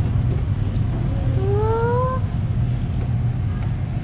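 Steady low rumble of room noise, with a short rising hum from a child about a second and a half in.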